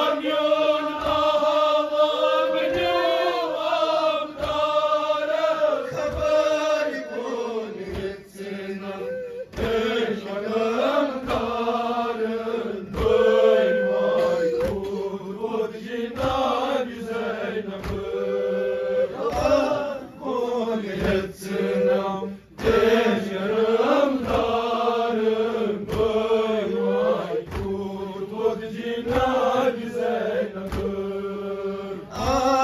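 A nauha lament chanted by male voices, a lead reciter on a microphone with men chanting along. Under the voices are rhythmic chest-beating (matam) slaps, about one a second.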